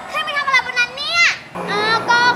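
A young girl's high-pitched voice calling out without clear words, rising sharply in pitch just over a second in, over background music.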